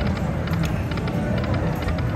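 Dragon Link Happy & Prosperous slot machine playing its game music with short chiming effects, over steady casino floor noise.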